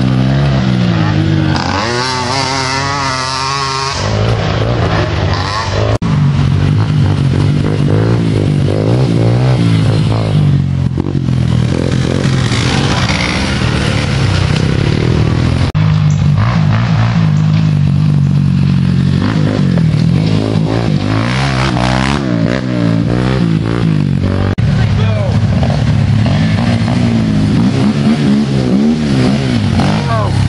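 Racing ATV (quad) engines revving hard, their pitch rising and falling over and over with the throttle.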